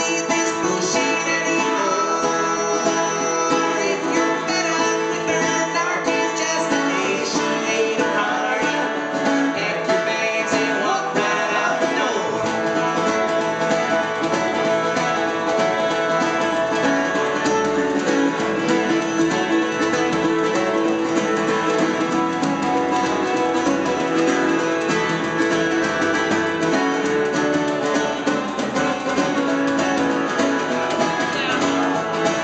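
Live folk-country band music: acoustic guitar strumming together with a button accordion's sustained chords, played steadily throughout.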